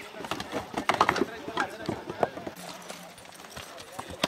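Horses' hooves clopping on a dirt trail, irregular thuds that thin out after about two seconds, with riders' voices calling in the background.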